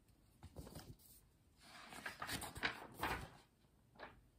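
Pages of a paper picture book being turned and handled, a soft rustle of paper about half a second in and again, louder, from about a second and a half to three and a half seconds in.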